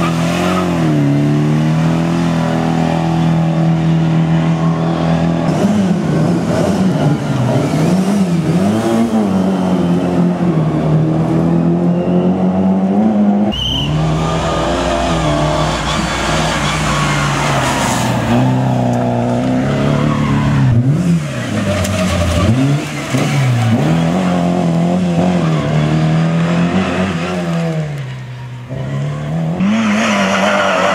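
Škoda Favorit rally car engine driven hard, revving up and dropping back over and over through gear changes and corners as it passes. It is loud throughout, with an abrupt cut to another pass about halfway.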